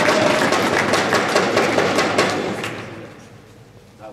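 Spectators applauding and cheering a won point in a table tennis match, a dense patter of claps that dies away about three seconds in.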